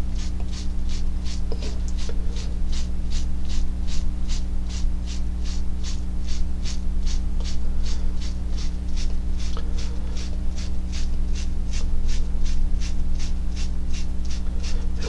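A paintbrush dabbed again and again against a canvas, about three light taps a second, stippling acrylic paint into a sand-and-gravel texture, over a steady low electrical hum.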